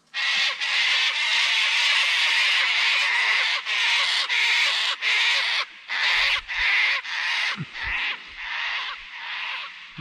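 Cockatoos screeching loudly and harshly: one long rasping screech for the first few seconds, then a run of shorter screeches about two a second.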